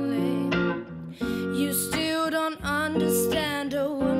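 Music: a clean electric guitar playing held chords, with a woman's voice singing over parts of it.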